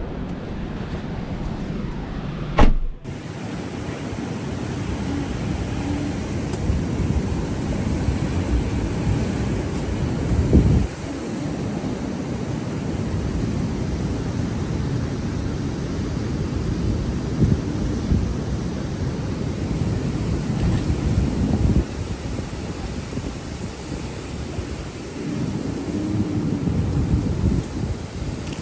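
Steady rumble of wind on the microphone over vehicles running on the sand, with one sharp knock about two and a half seconds in.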